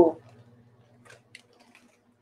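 The end of a woman's drawn-out "ooh" at the very start, then near quiet with a few faint short clicks and rustles from handling items while she bends down.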